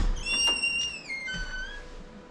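A door latch clicks, then the hinges squeak for about a second and a half as the door swings open, the squeak stepping down in pitch as it goes.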